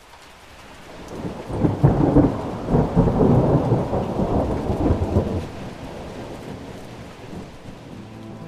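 Thunder rolling over steady rain, fading in from silence. The thunder swells about a second and a half in and dies away after about five seconds, leaving the rain.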